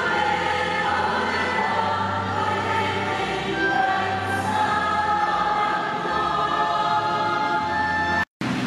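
Church choir singing a hymn, with long held low accompanying notes underneath.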